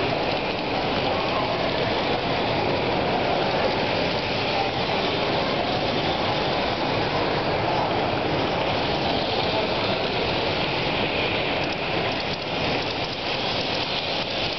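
Steady, even background din of a large exhibition hall, with no distinct sound standing out.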